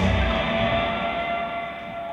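The last chord of a rock song on electric guitars ringing out and slowly fading away.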